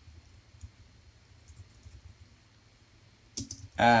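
Typing on a computer keyboard: faint, scattered key clicks over a low steady hum, with a few sharper clicks near the end.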